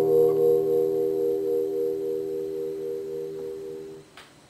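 Final chord of a classical guitar left ringing and slowly dying away, with a slight slow wavering in its tone, then damped by the palm at the very end.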